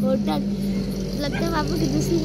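A steady, low engine hum that holds one pitch, with short bursts of high-pitched voices over it.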